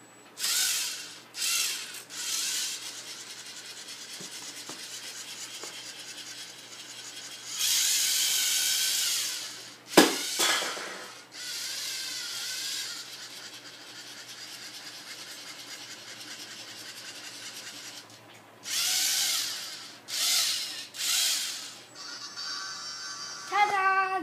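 LEGO Mindstorms NXT robot's servo motors whirring as it drives: short louder bursts when starting and turning, longer steady stretches while it follows the line. One sharp knock about ten seconds in.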